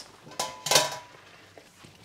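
A stainless steel mesh strainer clinking against cookware as drained tagliatelle is tipped off it: a light knock, then a stronger one a third of a second later with a brief metallic ring.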